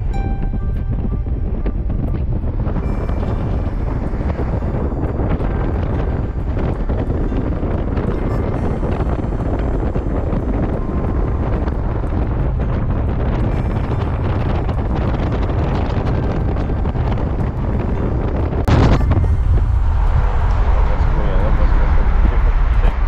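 Wind buffeting the microphone over road noise from a Renault Captur driving along, a steady rumbling rush. About three-quarters of the way through comes a brief swish, after which it runs louder.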